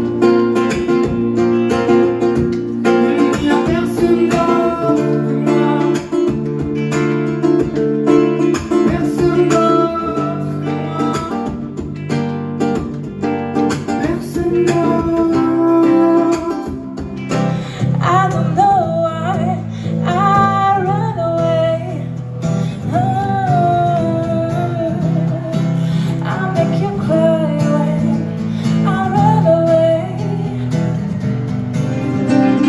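Two acoustic guitars strummed and picked together with a man singing. The vocal line comes to the fore about halfway through.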